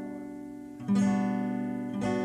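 Steel-string acoustic guitar with a capo: a chord rings and fades, is sounded again a little under a second in, and rings out.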